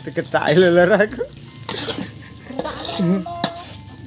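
Fried rice sizzling in a large aluminium wok as a metal spatula stirs and scrapes it, with a few sharp clicks of the spatula against the pan. A voice speaks over it in the first second and again briefly about three seconds in.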